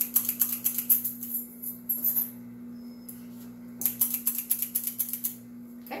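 A small metal scoop scraping and clicking against the inside of a can of frosting, in two bursts of rapid scratchy clicks, over the steady low hum of an electric ice cream maker running.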